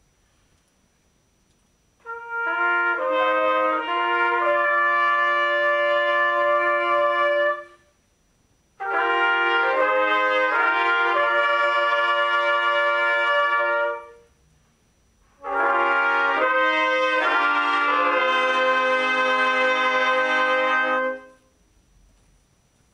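Trumpet ensemble playing three short phrases in harmony, each about five to six seconds long, moving through a few chords and ending on a held chord, with a pause of about a second between phrases.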